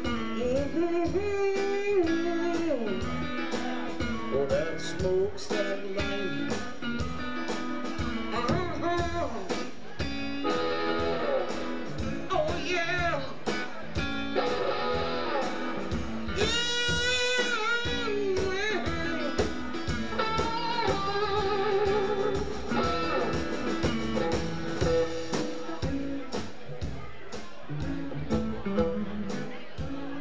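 Live blues band playing an instrumental stretch: an electric guitar solos with string bends and vibrato over bass and a steady drum beat.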